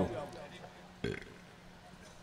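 A man's voice trails off on a falling pitch into a pause, broken about a second in by one short, low vocal noise close on the microphone.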